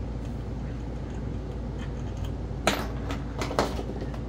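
A few sharp clicks and knocks of chainsaw parts and tools being handled on a workbench, two near the end, over a steady low hum from a running furnace.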